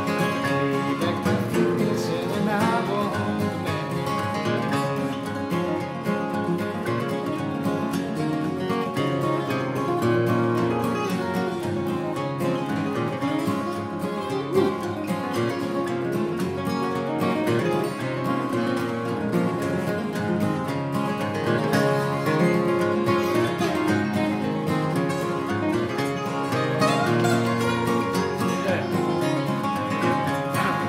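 Acoustic guitars playing an instrumental break in a bluegrass-style song, with a busy, continuous run of picked notes at an even level and no singing.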